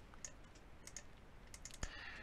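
Faint clicks of a computer keyboard and mouse while pasting and dragging an object on screen: a few scattered taps, with a sharper click near the end.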